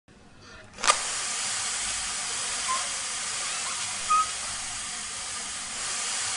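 Steady rushing hiss of air being blown through two thin plastic tubes to inflate a sealed packet, starting sharply with a click about a second in.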